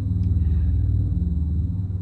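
Steady low rumbling hum with a faint high-pitched whine above it, and a single brief tick about half a second in.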